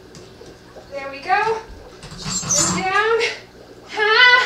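Short wordless vocal sounds that rise in pitch, one about a second in and a longer one between two and three seconds, with a dull thump and a rubbing noise under the second as the body goes up onto the pole.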